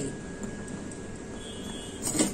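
Quiet steady hiss with no distinct knocks or pours, and a faint thin high tone near the end.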